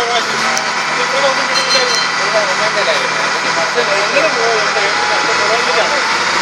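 Boat engine running steadily as the boat moves along the water, with voices talking over it.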